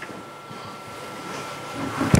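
Room tone of a meeting room: a steady hiss with a thin, unchanging high tone running through it, and no speech.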